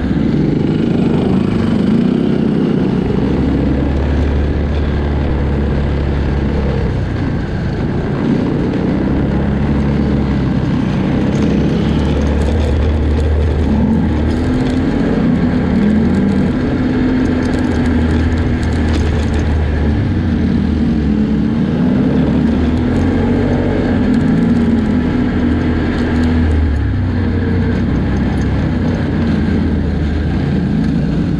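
Can-Am Outlander 650's V-twin engine running under way on a dirt trail. Its note rises and falls as the throttle changes, over a steady low hum.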